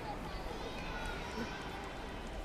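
Faint, scattered voices of an audience murmuring during a lull in the show, with no music playing.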